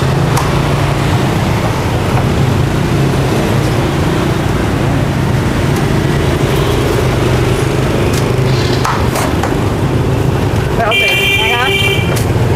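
A steady low background hum, with a few faint knocks of a cleaver cutting roast pork on a round wooden chopping block.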